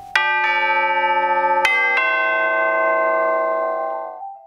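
Orchestral chimes (tubular bells) struck with hammers: four notes in two quick pairs about a second and a half apart, the tubes left ringing together in a sustained metallic chord.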